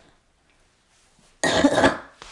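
A single loud cough from a person, about a second and a half in, lasting about half a second after a near-silent pause.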